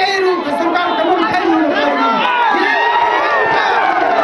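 A crowd of many voices shouting a protest slogan together, answering a man who leads the chant into a microphone.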